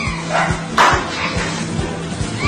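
A rottweiler barks twice in quick succession, about half a second in, over background music with a steady beat.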